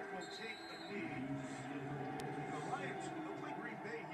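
Indistinct voices talking over a steady background of television broadcast sound.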